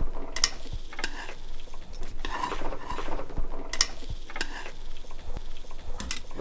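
Kitchen handling sounds: utensils and dishes clinking and knocking in scattered, irregular clicks as food is handled on a cooktop grill pan.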